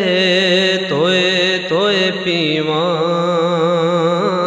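Gurbani kirtan: one voice sings long, held, ornamented notes with a wavering vibrato between sung lines, over a steady drone underneath.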